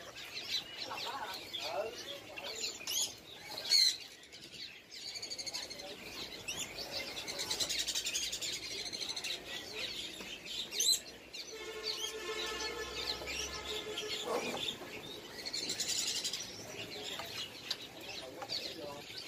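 A chorus of caged songbirds in a bird shop: many short, high chirps and whistles overlapping, with a longer buzzy call about two-thirds of the way through and a couple of sharp clicks.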